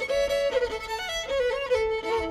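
Bluegrass fiddle bowing a quick melody at the opening of a tune, notes changing several times a second, with the string band's guitar, mandolin, banjo and upright bass behind it.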